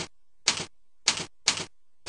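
Computer keyboard being typed on: three short clusters of key clacks, slow and unevenly spaced.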